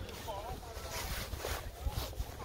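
Indistinct distant voices of players and spectators talking and calling across an open field, with a low rumble of wind on the microphone.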